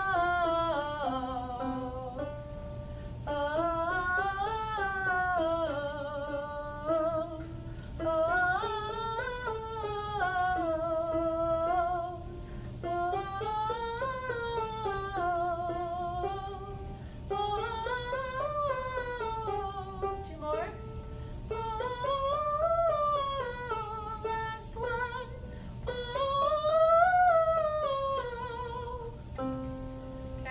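A woman singing a vocal warm-up phrase, an arching melody that goes up and back down and ends on a held note. It repeats about seven times, each repeat pitched a little higher than the last.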